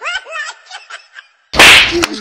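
Giggling, then about a second and a half in a sudden, very loud smack-like crack lasting well under a second.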